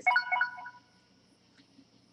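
A short electronic chime: a quick run of clean high beeping notes that fades within about the first second, leaving a faint steady room hum.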